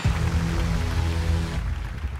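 Game-show music sting: a deep, sustained low chord with a hissing layer over it, starting suddenly and lasting about two seconds.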